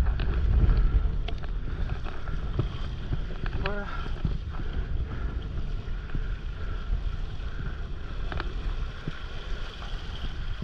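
Wind buffeting the microphone over the steady hiss and splash of a windsurf board's nose cutting through choppy water while sailing. A short falling pitched sound comes about four seconds in.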